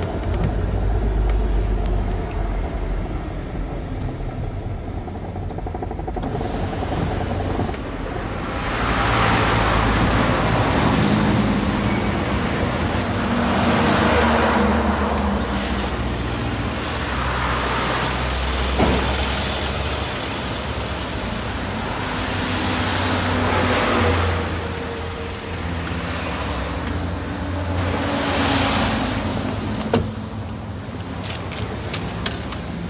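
Road traffic: a low engine rumble, then from about eight seconds in, cars passing one after another, each swelling and fading away over a couple of seconds.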